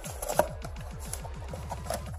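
Cardboard box and paper packaging handled and pulled open, with scattered light rustles and taps, over a low, rapid, evenly repeating pulsing in the background.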